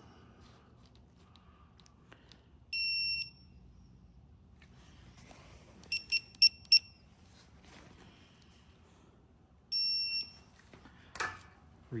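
Digital torque wrench beeping while a rocker arm bolt is torqued: a half-second beep, then four quick beeps as the wrench reaches its set torque, then another half-second beep.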